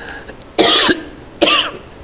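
A woman coughing twice, under a second apart, the throat irritation of a lingering cough.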